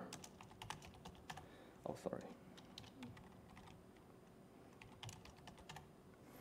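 Faint laptop keyboard typing: quick runs of keystrokes entering a terminal command, a burst early on and another near the end.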